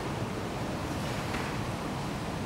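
Steady hiss of background noise with no speech. A faint brief sound comes about one and a half seconds in.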